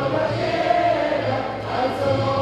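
A group of people singing together in unison, with long held notes over a steady low accompaniment.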